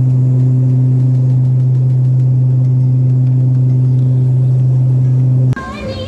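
Airliner cabin noise in flight: a loud, steady low hum with one higher overtone and no change in pitch, cutting off abruptly near the end.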